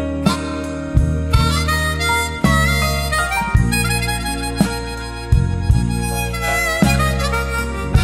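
Blues harmonica solo, the harp cupped in the hands against a vocal microphone, with bending, wailing notes over a backing of bass and drum hits.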